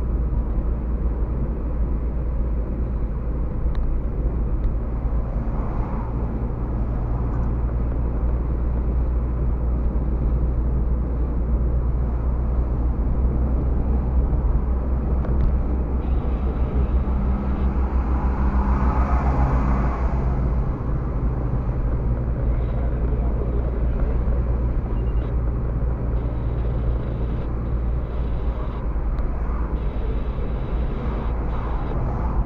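Steady engine and tyre-on-road noise inside a moving car's cabin, picked up by a dashboard camera, with a brief louder swell about two-thirds of the way through.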